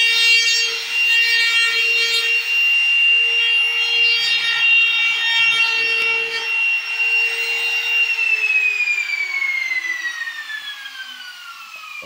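Small handheld electric power tool running at a steady high whine while it works along the edge of a plywood cabinet top, with wood rubbing and cutting noise. About eight seconds in it is switched off and the motor winds down, its whine falling steadily in pitch and fading.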